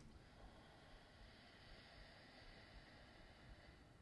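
Near silence: faint room tone with a soft, even hiss.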